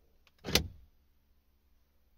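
BMW E36 central-locking actuator unlocking once, about half a second in: a single short clunk. It is commanded by a diagnostic scan tool's component test, and the driver's door lock is the only one working.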